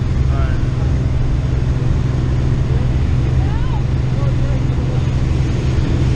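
Light aircraft's engine and propeller running steadily, heard inside the cabin with the jump door open, so wind rushes in with it. Faint raised voices come through over the noise a couple of times.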